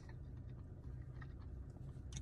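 Faint chewing of a mouthful of pizza, with a few soft mouth clicks, over a low steady hum inside a car.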